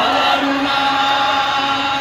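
Voices chanting one long note at a steady pitch.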